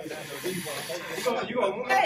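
A man blowing hard through a paper napkin held to his nose, one long hiss of breath that stops about one and a half seconds in, as he reacts to the burn of Da Bomb hot sauce. Men's voices talk under it.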